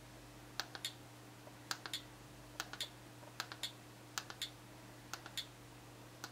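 Plastic clicks of a computer mouse button as keys on an on-screen keyboard are picked one after another. The clicks come in short clusters of two or three, about once a second, over a faint steady hum.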